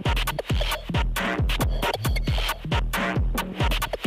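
Electronic dance music from a live DJ mix, driven by a steady kick drum at about two beats a second with dense, noisy percussion above it.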